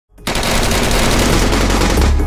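Rapid automatic gunfire, a loud continuous burst that starts suddenly about a quarter second in and runs as a fast even rattle of shots.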